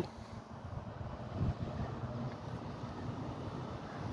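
Faint outdoor background with a low, steady hum of a distant engine.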